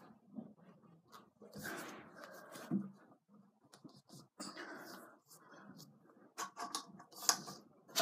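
Parts of a stunt scooter being handled during assembly, as the bar is worked into its clamp: irregular rubbing and scraping with scattered sharp clicks, several in quick succession near the end.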